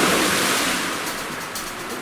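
Pool water splashing and sloshing as a person drops into it beside a kayak, the noise fading steadily.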